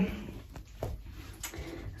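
A quiet pause in a small tiled room: faint room noise with two soft clicks, about a second in and halfway through the second second.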